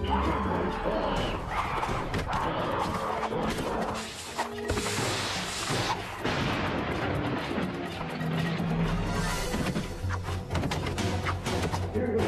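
Cartoon action-scene music overlaid with repeated crashes and booming impacts, the impacts thickest in the second half.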